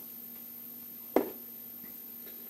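A single short thump about a second in, as the packets of mixing cups and filters are set aside on the workbench, over a faint steady hum and a thin high whine.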